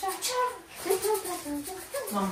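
Quiet speech in a small room, with a higher-pitched, child-like voice among it; no other sound stands out.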